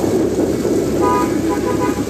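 A vehicle pushing through deep floodwater: a steady low rush of engine and churning water. From about a second in, a vehicle horn sounds in a few short toots.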